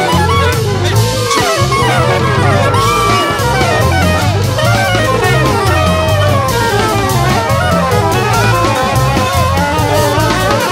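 Instrumental Brazilian jazz: drum kit and bass keep a steady groove under fast, winding melodic lines.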